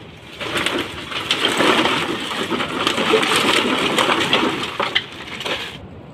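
A plastic bag full of empty plastic bottles being handled: dense crinkling of the bag and clattering of the bottles against each other. It starts about half a second in and cuts off suddenly near the end.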